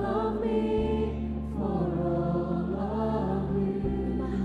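Choir singing a slow worship song over sustained low accompaniment notes, which change pitch about a second in and again near the end.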